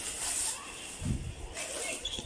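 Woven plastic sack rustling and crinkling as hands grip and shift it, with a short low muffled sound about a second in.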